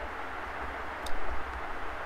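Steady background hiss with a low rumble underneath, and a single short click about a second in.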